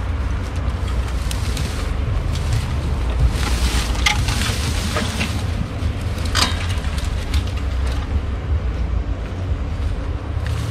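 Wind buffeting the microphone as a steady low rumble, with a few brief rustles and clicks midway.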